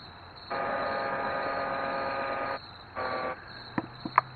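A horn-like tone of several pitches held together sounds steadily for about two seconds, then once more briefly, over the steady hiss of low-quality old video footage.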